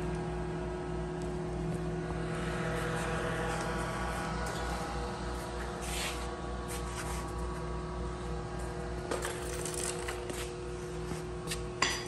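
Snap-on YA5550 plasma arc cutter switched on and idling, not yet cutting: a steady electrical hum with a faint whirring haze. A few light knocks about six seconds in and near the end.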